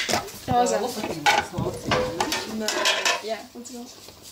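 Scattered light clinks and knocks of small hard objects on a glass-topped worktable, with voices talking in the background.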